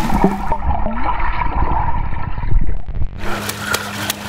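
Muffled, underwater churning and bubbling of swimming-pool water as a fully clothed man sinks after plunging in. About three seconds in the muffling lifts and the water sounds come through clearly as he surfaces.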